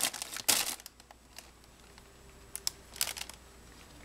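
A few brief crinkles and rustles of plastic packaging as a microfiber cloth is handled out of its pack: a louder crinkle about half a second in and a few short ones near the three-second mark, with quiet between.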